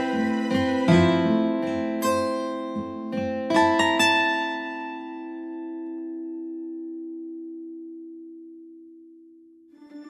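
Background music on a plucked-string instrument: a run of struck notes for about four seconds, then a final chord rings out and slowly fades away. A new piece of music starts right at the end.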